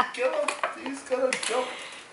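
A hard container knocking on a tile floor: two sharp clacks under a second apart, with quiet voices underneath.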